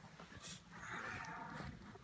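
Brown bear making a breathy vocal sound, about a second long, in the middle.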